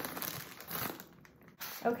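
Plastic bag of milk powder crinkling as it is handled and folded shut, in about the first second.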